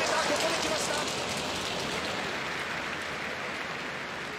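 A large arena crowd applauding a scoring helmet strike in a kendo bout, the applause slowly dying away. The tail of a competitor's drawn-out kiai shout trails off at the very start.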